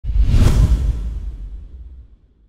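Whoosh sound effect for a logo intro, with heavy bass underneath. It starts suddenly, peaks about half a second in and fades away over the next two seconds.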